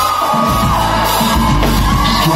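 Live pop song played loud in a concert hall, a singer holding a long high note over the band's steady low beat, with the crowd's shouts and sing-along mixed in.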